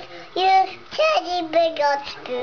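A toddler's high voice singing three short, drawn-out phrases in a sing-song tune.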